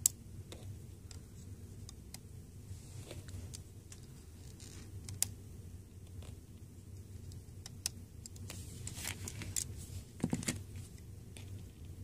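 Quiet handling noise of small rubber loom bands being stretched over and slipped onto the plastic pins of a Rainbow Loom, heard as scattered light clicks and rustles over a faint low hum.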